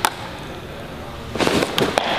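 A sharp click, then about one and a half seconds in a short burst of crackling, popping noise like a firecracker or small blast, lasting under a second.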